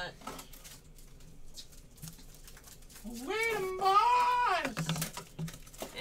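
A drawn-out wordless voice call, about three seconds in and lasting under two seconds. Its pitch rises, then steps up and holds before it breaks off.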